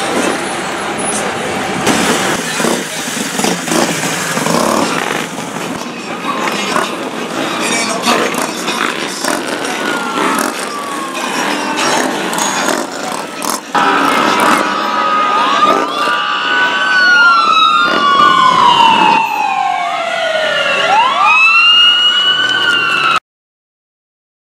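Street traffic noise with engines and voices, then from about halfway through an emergency vehicle siren sweeping up and down in pitch, louder than the traffic. The sound cuts off suddenly near the end.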